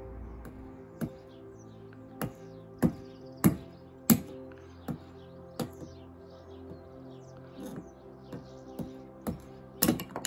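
Background music with steady held tones, over which wood is struck about a dozen times in sharp, irregular knocks.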